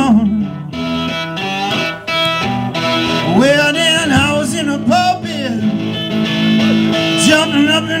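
Cigar box guitar playing an instrumental break in a blues song, low strings held as a steady drone under a melody whose notes slide up and down in pitch.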